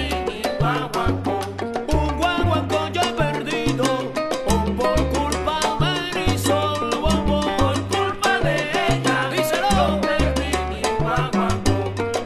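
Salsa music: a bass line moving in short held notes under steady, dense percussion and melodic instruments.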